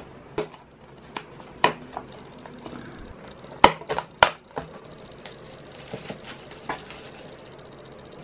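Scattered small clicks and taps of hands pushing enamel pins into the front panels of cardboard storage bins and handling the cardboard, with two sharper clicks a little past the middle.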